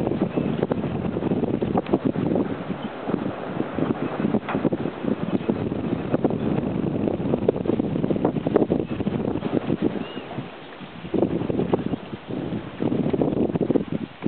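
Wind buffeting the camera's microphone, a steady rushing rumble with constant flutter. It eases briefly about ten seconds in.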